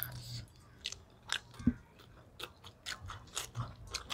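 Quiet eating sounds of chicken curry with rice being eaten by hand: biting and chewing on chicken on the bone, heard as scattered short clicks and mouth noises.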